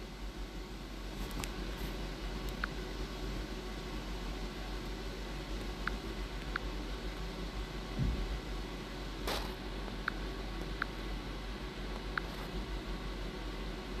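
Steady room tone, a low hum with hiss, with a few faint short ticks, a soft thump about eight seconds in and a sharp click just after it.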